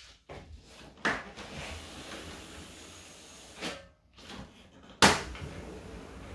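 A window being opened: a few knocks and rattles of the latch and frame, then a sharp knock about five seconds in as the sliding window comes open, after which a steady hum of street traffic comes in from outside.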